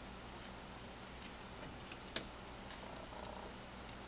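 Quiet, steady background hiss with a few faint ticks and one sharp click about two seconds in, from small plastic craft clips being handled on a paper journal.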